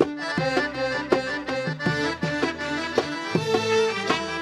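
Sudanese band playing an instrumental passage: accordion and violins carry the melody over a steady beat of hand drums.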